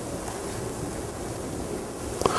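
A steady, even hiss of room noise.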